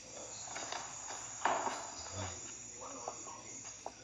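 Television soundtrack picked up through the room, with a faint steady high whine, a few soft clicks, and a short low hummed 'mm', a mock cow moo, about two seconds in.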